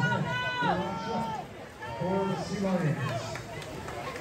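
Spectators yelling encouragement at a swim race: several drawn-out shouts, some falling in pitch at their ends, with a brief lull about a second and a half in.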